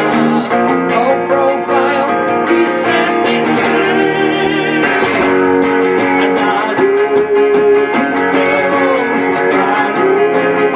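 Home-built plywood electric guitar with a Burns Tri-Sonic pickup, strummed in a quick, even rhythm, with a man singing over the chords.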